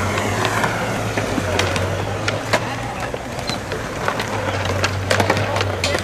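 Skateboard wheels rolling over a concrete skatepark floor with a steady low rumble. Scattered sharp clacks of boards hitting the ground come more often near the end.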